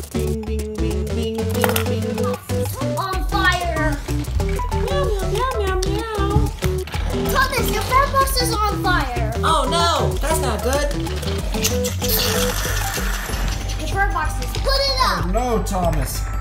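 Light background music with children's voices playing and calling out over it, the voices starting a few seconds in.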